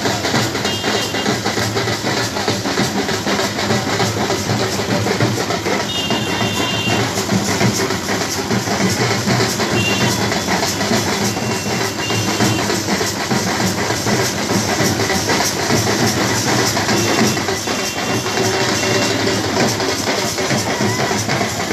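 Several dhol drums beaten with sticks in a dense, continuous rhythm, amid the noise of a large crowd. Brief high tones cut through a few times.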